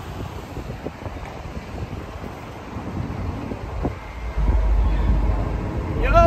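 A BART commuter train running along the track at the station, a steady rail hiss and rumble. Wind buffets the microphone from about four seconds in.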